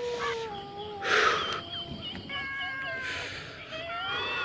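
Dogs howling at a distance: long, drawn-out, slightly wavering howls, one sliding down in pitch over the first second, then several overlapping held howls from about halfway. A short burst of noise comes about a second in.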